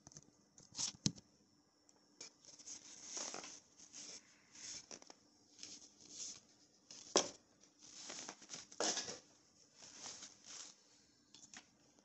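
Faint, irregular rustling and scraping in short bursts of a second or less, with a few sharp clicks, from things being handled close by.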